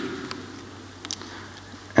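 Lecture-hall room tone in a pause between sentences: a steady low hum under faint background noise, with a couple of faint short clicks about a second in.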